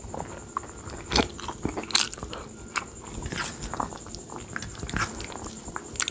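A person chewing a mouthful of rice with kadhi and besan pakora eaten by hand: irregular wet chewing and mouth clicks, the sharpest about one and two seconds in.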